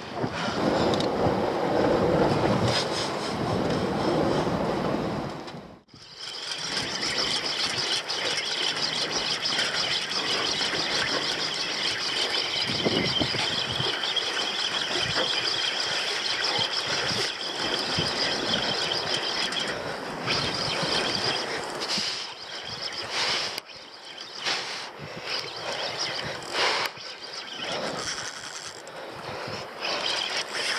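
Wind noise on the microphone, loudest in the first few seconds and cut off suddenly, then a steady high-pitched buzz over continuing wind noise for much of the rest.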